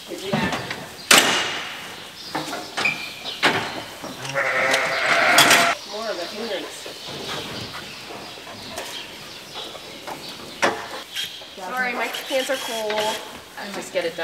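Sheep bleating, with one long loud bleat in the middle and a run of wavering bleats near the end. A sharp clank comes about a second in.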